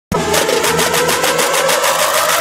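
Channel intro sound effect: a fast, even rattle of about eight strokes a second over a held tone that slowly rises in pitch, starting abruptly.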